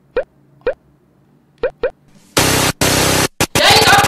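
Comedic cartoon 'plop' sound effects: four short blips that each rise quickly in pitch, spaced unevenly over the first two seconds. About two and a half seconds in, a sudden loud burst of static-like hiss cuts in and out a few times, then gives way to a man's shouting.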